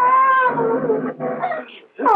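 A high voice wailing in distress: long drawn-out cries that rise and fall in pitch, fading out near the end.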